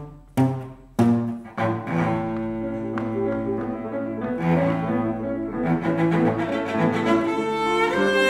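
Two cellos playing together: a few short detached bow strokes in the first second and a half, then sustained bowed notes.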